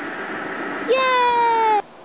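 A long, high-pitched cheer of "Yay!", held for about a second with its pitch sliding slowly down, then cut off abruptly. Before it there is a steady rushing background noise.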